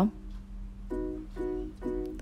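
Background music: a light tune of single plucked-string notes, about two a second from around a second in, over a low steady hum.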